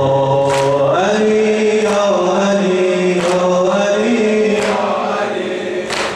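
A male reciter singing a Shia mourning lament (noha) in long, slowly gliding held notes through a microphone. The congregation beats their chests in time, a sharp slap about every 1.3 seconds.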